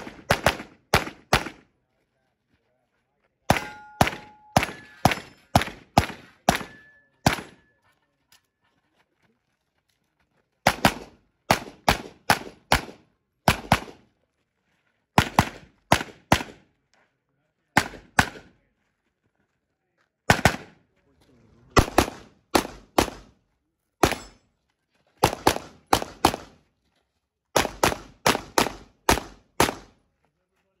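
Pistol shots fired in quick strings of two to six with short pauses between, as shooters work through a practical shooting course. About four to seven seconds in, some shots are followed by a brief metallic ring of struck steel targets.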